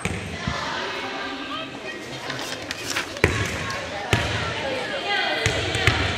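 A volleyball bouncing on a hardwood gym floor: a few sharp thumps, the clearest about three and four seconds in, echoing in the large hall over background chatter.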